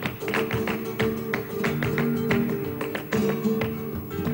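Flamenco acoustic guitars playing a tangos accompaniment, with many sharp rhythmic strokes over sustained low notes.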